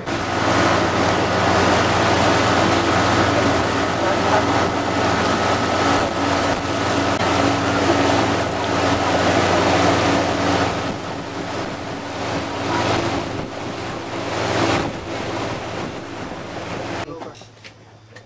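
A boat motor running steadily at speed, with water rushing past and wind buffeting the microphone. About a second before the end it cuts off suddenly to a much quieter background.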